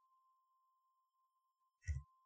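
Quiet, apart from a faint, steady high-pitched tone and a brief short sound near the end.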